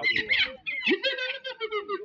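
Several voices overlapping, with one voice holding a drawn-out call through the second second.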